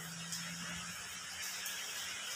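Steady rain falling: a soft, even hiss.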